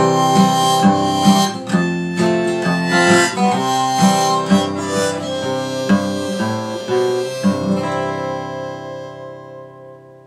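Acoustic guitar strummed with a neck-rack harmonica playing over it, as a folk song's instrumental ending. About three-quarters of the way in, the last chord is held and rings out, fading away near the end.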